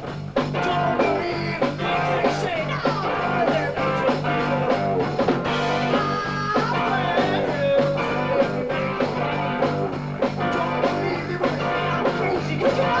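A live rock band playing a song, with electric guitar over a steady bass line and drum beat.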